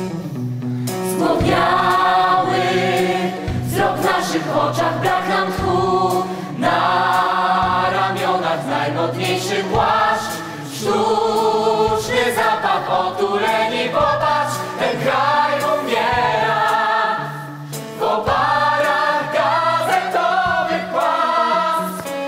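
A stage musical's cast singing together as a choir over band accompaniment, in long phrases with short pauses between them.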